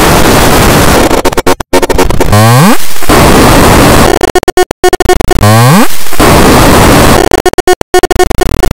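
Harsh, loud noise from a heavily distorted, effects-processed cartoon soundtrack, chopped by many brief stutter-like dropouts. Two sliding pitch sweeps come about three seconds apart, and steady held tones join in near the end.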